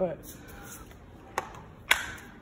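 Two sharp clicks about half a second apart near the end, the second louder, after a faint rustle.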